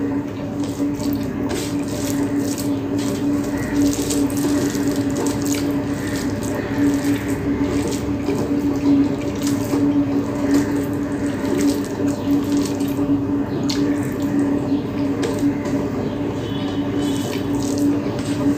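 Fingers kneading and mixing red spinach fry into rice on a plate: wet squishing with many small irregular clicks, over a steady low hum.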